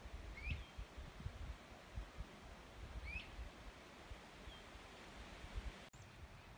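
A small bird chirping twice, short rising notes about two and a half seconds apart, with a fainter third note later, over a faint outdoor hiss and low rumbling bumps.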